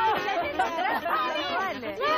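Several people talking over one another, a babble of voices.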